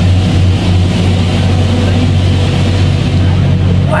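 A loud, steady low rumble that runs on without change through the pause in speech.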